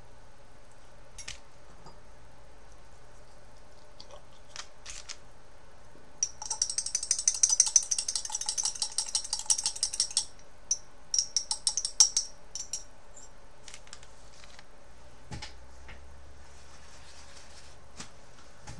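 Metal tweezers clinking and rattling against a glass jar as they are swished about to clean off paint: a quick, continuous run of sharp clinks for about four seconds, then a handful of separate clinks.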